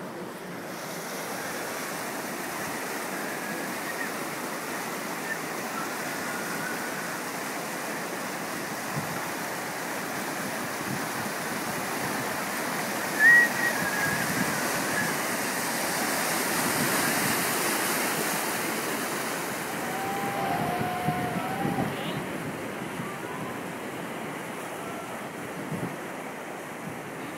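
Whitewater rushing steadily through an artificial slalom course's rapids. There is some wind on the microphone. A brief high-pitched call stands out about halfway through, and a shorter, lower one comes a few seconds later.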